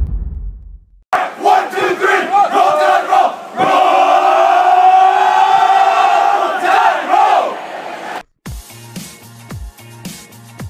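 A team of young men in a huddle shouting and chanting together, building to one long group yell held for several seconds. A low boom fades out in the first second, and near the end electronic music with a steady beat starts.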